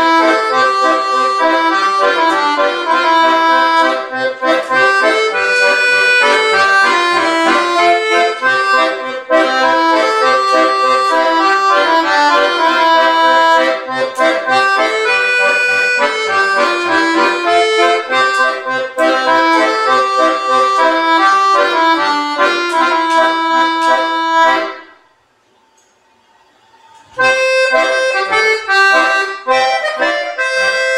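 Red Hohner piano accordion played solo: a busy melody on the right-hand keyboard over a regular bass-and-chord accompaniment on the left-hand buttons. The playing stops about 25 seconds in for a pause of about two seconds, then starts again.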